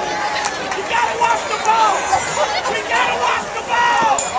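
Football crowd in the stands, many voices talking and shouting over one another.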